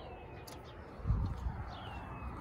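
A bird calling twice outdoors, each call a short falling whistle, one at the start and one near the end, with a low thump about a second in.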